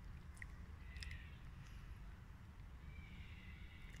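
Quiet outdoor ambience: a steady low rumble with a few faint, short high chirps about half a second and a second in, and a faint high tone near the end.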